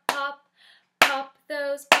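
Hand claps, one on each sung "pop", about a second apart, with a woman singing between them.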